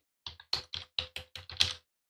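Typing on a computer keyboard: a quick run of about eight keystrokes over roughly a second and a half, then stopping.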